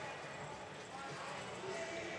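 Chatter of voices in a large gymnastics hall, with soft knocks and a dull landing thud on the mat near the end as a gymnast dismounts from the still rings.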